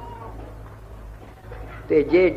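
A pause in a man's speech filled by the steady low hum and faint background noise of an old recording, with a brief faint tone right at the start; his voice comes back in near the end.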